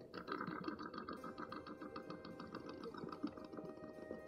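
Male sage-grouse strutting on a lek: a dense, rapid rattle of overlapping wing swishes and popping air-sac sounds from several displaying males.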